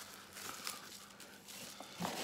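Faint rustling and crinkling of bubble wrap and a cardboard box being handled, with a few soft clicks.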